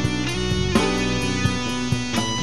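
Pop-rock band recording: electric guitar playing chords over a drum kit, with drum hits about three-quarters of a second in and near the end.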